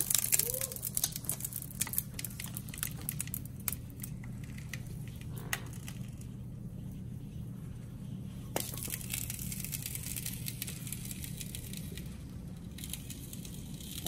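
Faint crinkling and crackling from rubber balloons, chilled stiff in liquid nitrogen, as they warm and re-inflate, with a few sharp clicks. A steady low hum runs underneath.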